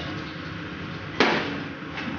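A single sharp clink of kitchenware about a second in, a knock followed by a short ringing decay.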